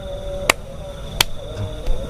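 Two sharp slaps of hands meeting, about two-thirds of a second apart, as two people run through a hand-greeting routine.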